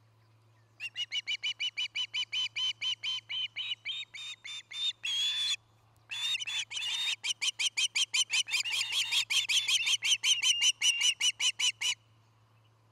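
Osprey calling: a long series of short, clear whistled chirps starting about a second in, about four a second. There is one longer call and a brief pause near the middle, then the chirps come faster and louder to the end.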